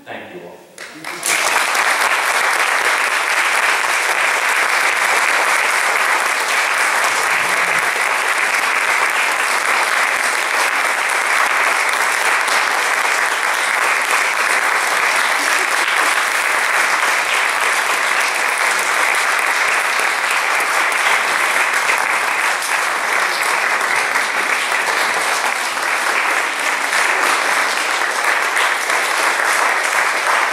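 Theatre audience applauding, starting suddenly about a second in and holding steady and loud, at the end of a talk.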